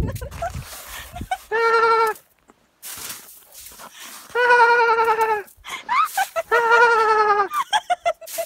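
A woman's high-pitched laughter in three long, quavering, bleat-like peals, each about a second long.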